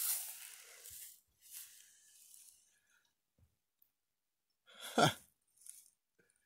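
A man's breathy exhale at the start that fades over about a second, then near silence, then a short muttered "huh" near the end.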